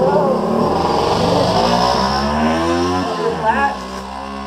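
A small engine running close by, loud, its pitch sliding down over about two and a half seconds, rising briefly, then fading near the end.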